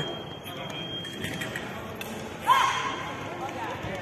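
Low background noise of a large sports hall, with one drawn-out call from a voice across the hall about two and a half seconds in.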